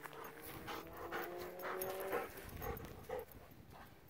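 A dog panting in quick, even breaths, about three a second. Under the first two seconds a faint droning tone slowly rises in pitch.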